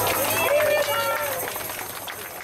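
A woman's voice through a microphone PA as the band's backing dies away, the sound fading out towards the end.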